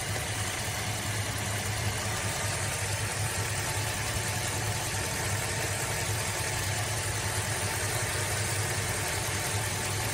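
Jeep's 5.7-litre HEMI V8 idling steadily, heard close up under the open hood as an even low hum. The oil has been dosed with ProLube additive to see whether the idle runs smoother.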